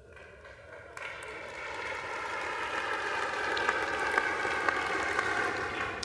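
Applause from a large audience, starting about a second in and swelling steadily louder.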